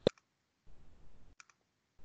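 A sharp computer mouse click at the start, with a lighter one just after it. A faint double click follows about a second and a half in, over low microphone hiss.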